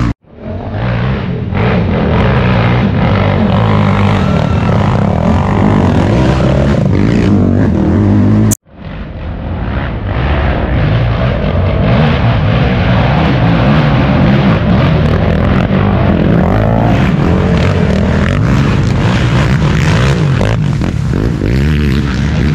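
ATV engines running hard and revving, their pitch wavering under load. The sound cuts out abruptly about eight and a half seconds in and fades back up.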